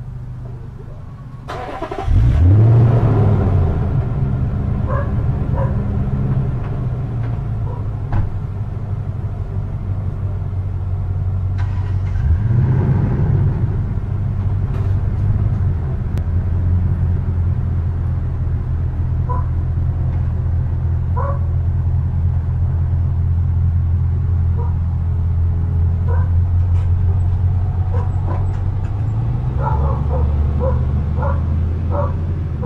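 Toyota Tundra pickup's engine starting about two seconds in, then running steadily, with a brief rise in revs around the middle, as the truck pulls away towing its trailer.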